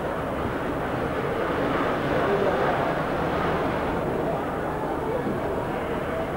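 Steady crowd babble of many indistinct voices in a large hall.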